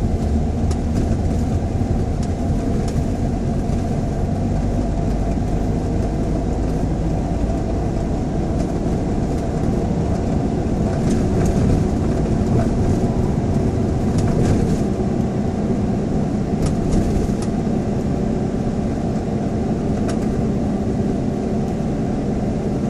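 Car driving, heard from inside the cabin: a steady rumble of engine and tyre noise, with a few faint ticks.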